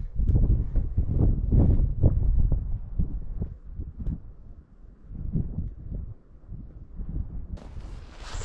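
Wind rumbling and buffeting on the camera microphone, mixed with irregular low thumps and knocks from someone climbing down off a cabin roof. The sound is loudest in the first half and eases off after about four seconds.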